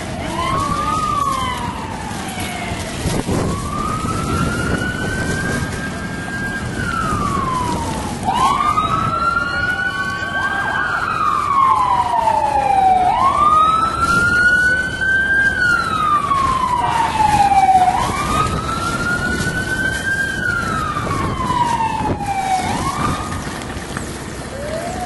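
Emergency vehicle siren wailing, its pitch rising slowly and falling again about every four to five seconds. It is loudest in the middle.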